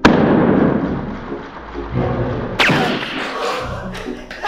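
A water-filled balloon bursts with a sudden pop above a person's head, and a rush of water splashes down over him, fading over about two seconds. About two and a half seconds in comes a second sudden hit with a falling swish. Music plays underneath.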